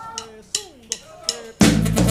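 A few sharp clicks of a count-in, then a live tierra caliente band with drum kit, bass and keyboard comes in loudly about a second and a half in.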